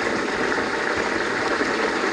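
Steady rushing of water at a borehole head, with a low thump about halfway through.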